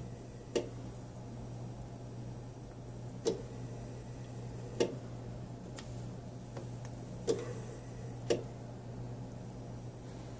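Allied Healthcare AHP300 transport ventilator cycling breaths into a test lung: soft valve clicks, the later ones in pairs about a second apart, over a steady low hum.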